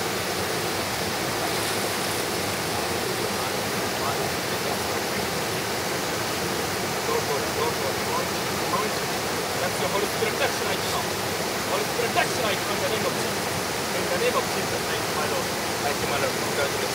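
Small waterfall: water pouring steadily over a low rock ledge into a river pool, a continuous even rush.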